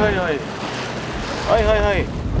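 Wind buffeting the microphone over choppy sea water, with short exclaimed vocal calls at the start and again near the end.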